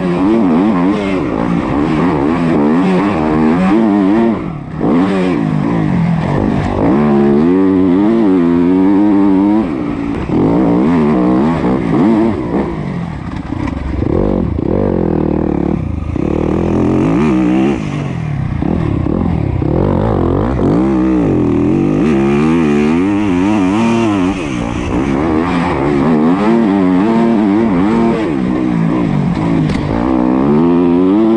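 Yamaha YZ250F four-stroke single-cylinder motocross bike engine heard on board while riding, its pitch rising and falling over and over with throttle and gear changes. The engine note briefly drops out about four and a half seconds in.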